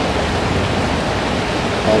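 Steady rushing of a creek's running water, even throughout, with a man's voice starting at the very end.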